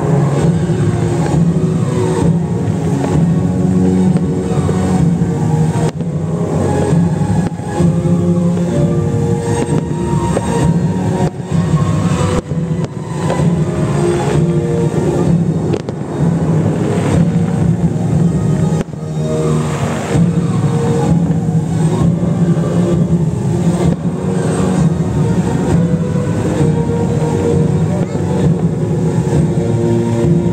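Show soundtrack music with long held notes that shift every few seconds over a low steady rumble.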